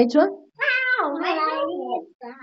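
A young girl's long, wordless high-pitched vocal sound, lasting about a second and a half and dropping in pitch partway through.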